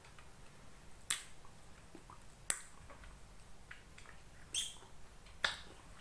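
Wet mouth clicks and lip smacks of someone chewing bagel close to the microphone, four sharp clicks at irregular intervals over a quiet background.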